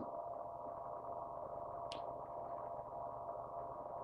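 Faint steady background hum with a few thin steady tones, and a single brief tick about two seconds in.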